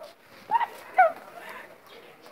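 Two short, sharp yelps about half a second apart.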